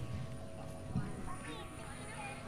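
Faint, indistinct voices over a low rumble, with a soft thump about a second in.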